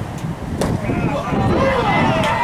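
A sharp pop about half a second in as the pitched rubber baseball meets the catcher's mitt, followed by players' voices calling out across the field.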